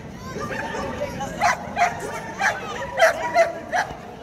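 A dog barking about six times in a quick, uneven series, roughly two barks a second, starting about a second and a half in, over crowd chatter.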